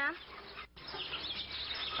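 Birds chirping in the background, with short high calls repeating.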